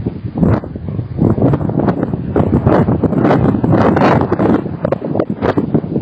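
White stork working its bill through the twigs and straw of its nest, giving a dense, irregular rustling and crackling that starts abruptly and keeps on without a break.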